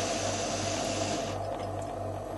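Camping gas stove burner hissing steadily, then cut off suddenly about a second in as the gas is turned off.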